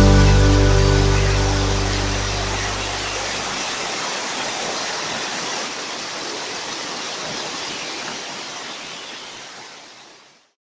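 The last notes of a song ring out and fade over the first few seconds, leaving the steady rush of a rocky mountain stream, which slowly fades out near the end.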